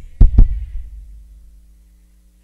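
Two heavy low thumps about a fifth of a second apart, each loud and sudden, followed by a low boom that fades over about a second.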